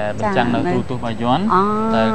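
A person talking, with one syllable drawn out about one and a half seconds in.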